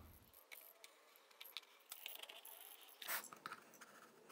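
Near silence, with a few faint scattered clicks and a brief faint sound about three seconds in.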